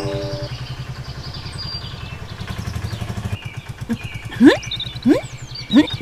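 A vehicle engine running with a steady, rapid low throb that drops away about three seconds in. It is followed by three quick rising sweeps, the loudest near the middle of the run.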